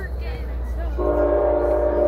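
A horn sounding a steady chord of several tones. It starts about halfway in and is held.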